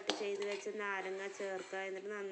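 A woman's voice talking, with a short sharp click just after the start.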